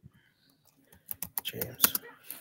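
Typing on a computer keyboard: a quick, uneven run of key clicks that starts about a second in, as if someone is searching for something online.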